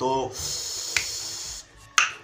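A steady high hiss for about a second, with a small click in the middle, then a single sharp finger snap just before the end.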